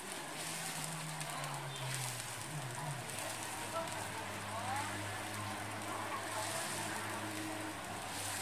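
Steady sizzling and crackling of bukkumi rice cakes frying in oil on a flat griddle, with voices in the background.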